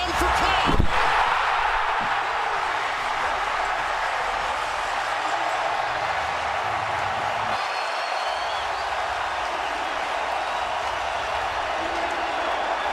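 Arena crowd cheering steadily after a home basket, with a sharp impact about a second in.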